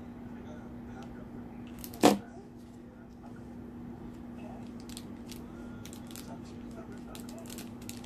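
Ribbon strips being handled and pressed down while hot-gluing a ribbon pin: faint rustles and small clicks, with one sharp knock about two seconds in, over a steady low hum.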